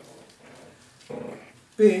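A man's voice at a lectern microphone: a quiet pause with faint small noises, a short low sound from his voice about a second in, then he starts reading aloud near the end.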